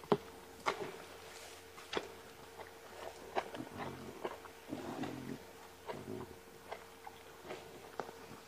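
Lions feeding on a buffalo carcass: irregular sharp clicks and crunches of chewing and biting at flesh and bone, with a faint steady hum underneath.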